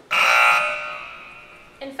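A loud buzzer-like tone, added as a sound effect to mark the example evaluation as wrong. It starts suddenly and fades away over about a second and a half.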